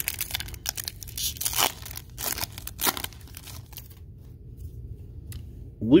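A foil trading-card pack being torn open, the wrapper crinkling. It comes as a run of short tearing and rustling noises over the first three seconds or so, then quieter handling noises.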